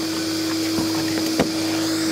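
A small motor humming steadily on one clear tone over a hiss, with two light clicks about a second and a second and a half in.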